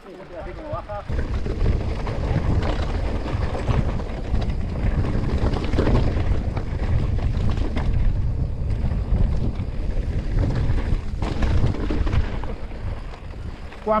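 Wind rumbling on the camera microphone and tyres rattling over a rough dirt singletrack as an electric mountain bike rides downhill, a steady noise with many small knocks through it.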